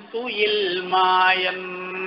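A man's voice chanting in a long, drawn-out held note that dips slightly before settling, then fades near the end.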